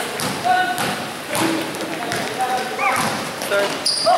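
Basketball being dribbled and bouncing on the court floor in a large gym, with players' short shouts and calls over the thumps.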